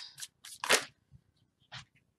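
A few short, soft clicks and swishes of tarot cards being handled as cards are drawn from the deck. The loudest comes about three-quarters of a second in, with a last small one near the end.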